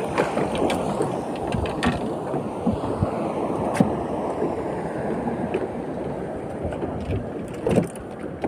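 Steady rushing noise of wind and sea water around a small open boat, with a few faint sharp clicks as a spinning reel is cranked to wind in line.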